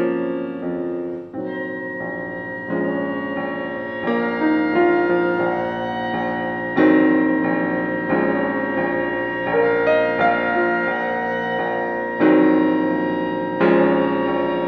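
Background film-score music on piano: slow, sustained chords, a new one struck every second or two and left to ring.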